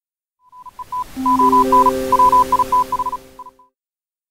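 Short electronic jingle: one high tone beeping in a quick, uneven on-off pattern over three low synthesizer notes that come in one after another and hold, with a swell of hiss. It starts about half a second in and stops shortly before the end.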